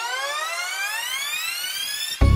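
Synthesized riser in a song intro: one long, steady upward glide in pitch, with a bright, many-layered tone.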